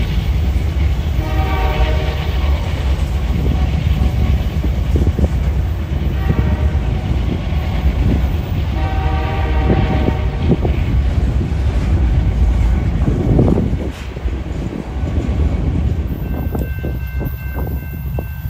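Two diesel-electric freight locomotives, an EMD SD70ACU and a GE AC4400CW, working at full power to pull a heavy train up a grade, with a deep, steady engine rumble and rolling rail noise. The horn sounds three times in the first ten seconds, and the sound drops off a little after two-thirds of the way through.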